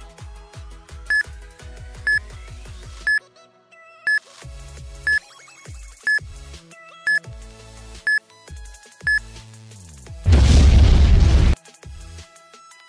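Countdown timer beeping once a second, nine short high beeps over electronic background music with a beat. About ten seconds in, a loud burst of noise lasting just over a second marks the end of the countdown.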